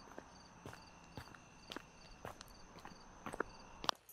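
Footsteps of a person walking at a steady pace on a paved pavement, about two steps a second.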